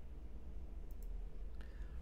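A low steady electrical hum, with a couple of faint sharp clicks about a second in and another shortly before the end.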